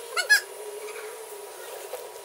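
A bird chirping: a quick run of high, up-and-down chirps about a quarter second in, the loudest sound here, then only a low steady background.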